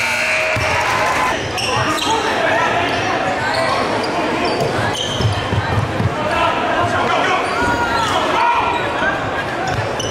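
Live court sound of a basketball game in a gym: a basketball dribbled on the hardwood floor, short sneaker squeaks, and spectators talking, echoing in the large hall.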